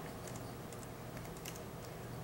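Faint typing on a computer keyboard: a run of light key clicks.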